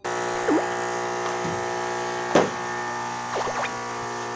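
Vacuum cleaner motor running with a steady hum full of overtones, used for housework cleaning. A few brief squeaks sound over it, the sharpest just past the middle.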